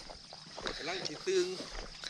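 Speech: a man saying a few quiet words in Thai, over faint outdoor background.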